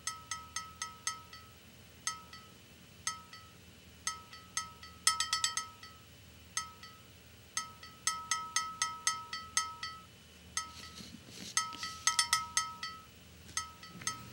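A measuring spoon clinking again and again against a dye bottle's rim as dye powder is tapped off into the premix solution. Each tap rings briefly, and the taps come in quick clusters with short pauses between.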